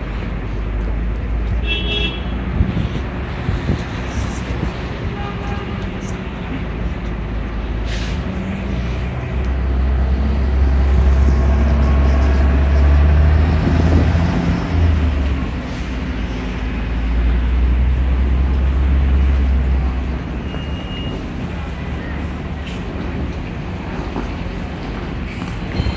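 Street traffic on a wet road, with tyres hissing through water. A heavy vehicle's engine rumbles low and loud from about ten seconds in and swells again near the twenty-second mark. About two seconds in there is a brief high-pitched tone.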